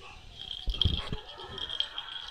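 Toy poodle playing with knitted toys on a quilted mat: a short cluster of soft thumps and snuffling about a second in, with a few lighter knocks after. A steady high thin whine runs underneath.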